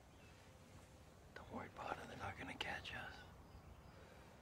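A man's voice whispering a short phrase, lasting under two seconds, over faint outdoor background.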